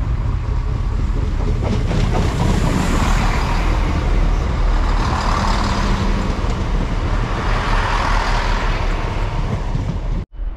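A GWR diesel passenger train passing close by on the seawall line. It is a loud rumble of engine and wheels on the rails that builds over the first couple of seconds and stays loud as the carriages go past.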